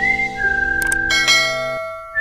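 Background music: a whistled melody that steps down in pitch over held chords.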